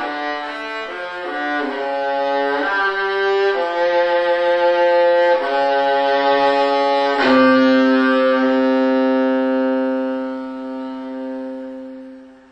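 Solo violin playing a slow melodic line of changing notes, settling about seven seconds in on a long held note that fades away near the end.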